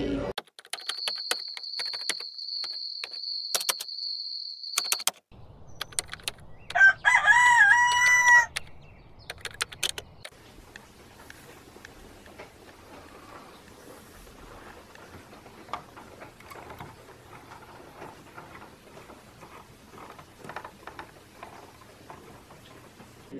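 A rooster crowing once, about seven seconds in: one loud, bending call that is the loudest sound here. Before it comes a steady high tone with clicks, and after it faint steady background noise.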